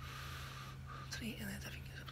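Faint whispered speech from a man, opening with a long breathy hiss, over a steady low hum.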